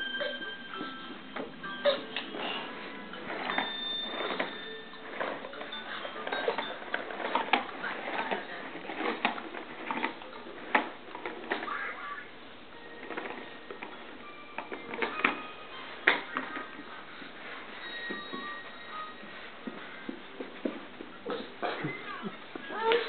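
A plastic electronic toy car playing short electronic beeps and tinny snatches of tune, with many sharp clicks and knocks throughout.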